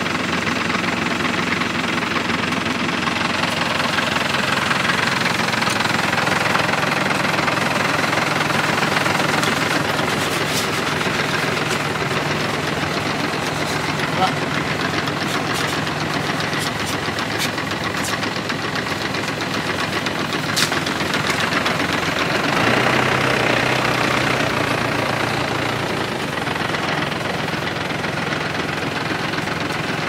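Motor-driven sprayer pump running steadily, with the hiss of paint spraying from a hand lance. The motor's note steps down a little about three-quarters of the way through, and two short clicks sound in the middle.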